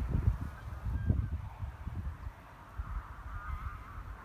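Low buffeting rumbles on the microphone, strongest at the start and again about a second in, with faint wavering bird calls in the background, loudest late on.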